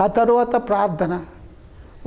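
A man speaking into a handheld microphone: one short phrase in the first second, then a pause.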